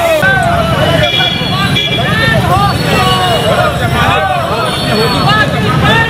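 Crowd of marchers talking over one another, no single voice clear, over a steady low rumble of street traffic.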